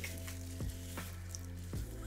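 A hairbrush pulled through short dry hair, a few faint strokes over a steady low hum.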